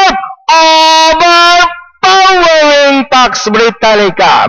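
A race caller's voice shouting the finish of a horse race in long, drawn-out held words, the first held for about a second, then more calling with the pitch sliding up and down.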